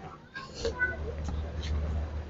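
Background sound of a busy street market: faint scattered voices over a steady low hum.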